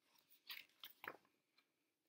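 Faint rustle and crackle of a picture-book page being turned by hand, a few short crinkles between about half a second and just over a second in.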